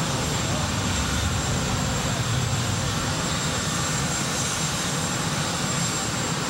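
Steady, loud aircraft engine noise: an unbroken roar, heaviest in the low end, with no starts or stops.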